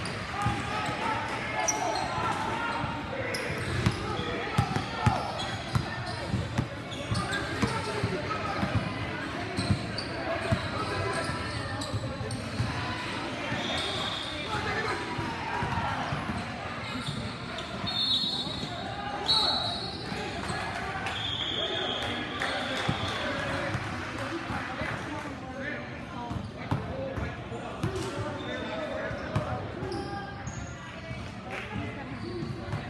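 Basketball game sounds in an echoing gym: a ball bouncing on the court amid the voices of players and onlookers, with several short high-pitched squeaks a little past the middle.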